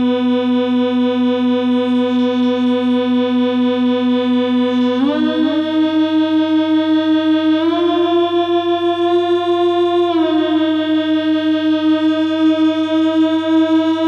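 Waldorf Rocket synthesizer holding a single sustained buzzy drone note rich in overtones, which glides up in pitch about five seconds in and again near eight seconds, then slides slightly down around ten seconds. A steady low hum runs beneath it.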